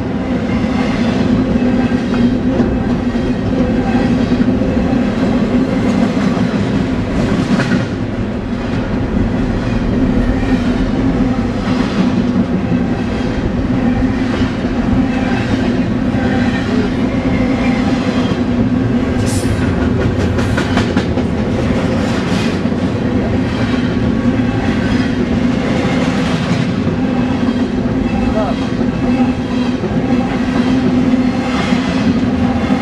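Double-stack container train's well cars rolling past close by: a steady loud rumble of steel wheels on rail, with repeated clicks and clacks from the trucks. A brief high squeal rises out of it about two-thirds of the way through.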